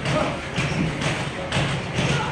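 Several dull thuds of boxing gloves landing and feet moving on the ring mat during sparring, with music playing underneath.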